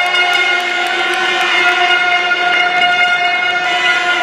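A single steady pitched tone with many overtones, held unbroken and loud.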